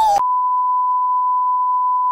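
A colour-bar test tone: one steady, high-pitched sine beep that cuts in right after a woman's drawn-out cry is chopped off and stops abruptly at the very end.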